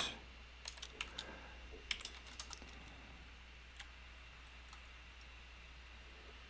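Faint computer keyboard keystrokes: a few quick clusters of key clicks in the first two and a half seconds, then a couple of single keystrokes over a low hum.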